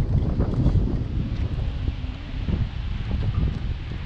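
Wind buffeting the camera microphone, a gusting low rumble that rises and falls.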